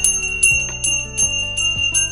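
Small brass hand bell rung rapidly, several strikes a second, with a high, clear ring that carries on between strikes.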